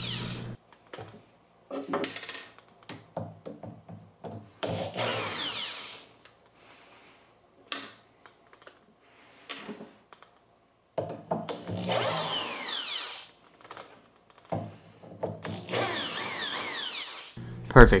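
Power drill running in about five short bursts, backing screws out of magnetic cabinet door catches, its pitch falling as each run slows, with small clicks of the bit and screws between runs.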